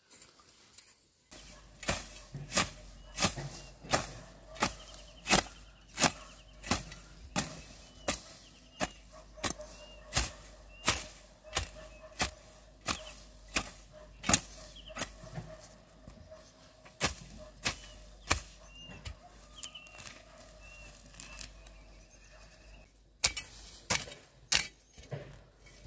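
A wooden-handled hand hoe chopping into garden soil, with sharp strikes about one and a half times a second in a steady rhythm, starting about a second in.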